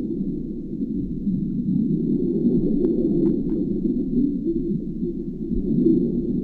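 Low, steady underwater rumble as picked up by a submerged camera, with a faint steady high whine and a few faint clicks about three seconds in.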